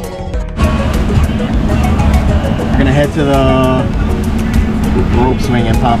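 Background music with a steady beat over the running noise of a motorboat underway (engine, wind and water), which comes in suddenly about half a second in. A man's voice starts right at the end.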